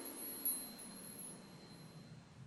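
Logo-intro sound effect: thin, high sparkling chime tones ringing on, with a small shimmering strike about half a second in, over a soft whoosh that fades away.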